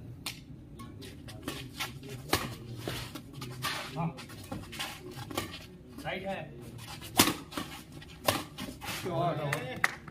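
Badminton rally: sharp racket strikes on the shuttlecock at irregular intervals, the sharpest about seven seconds in. People's voices call out briefly around six seconds in and again near the end.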